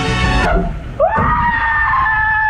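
Background music cuts off abruptly about half a second in. A second later a long, high-pitched scream starts with a quick upward swoop and is held at one pitch.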